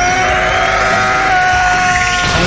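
Fan-film soundtrack: music under one long scream held at a steady pitch, as an animated character powers up.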